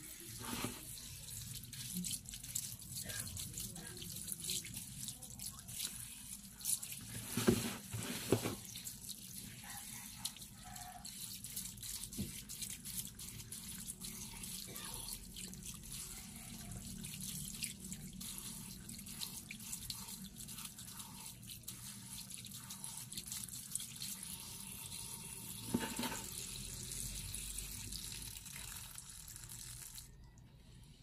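Water running onto mung bean sprouts in a pot, with wet rustling as a hand stirs through them, and a few louder knocks about seven to eight seconds in and again near the end.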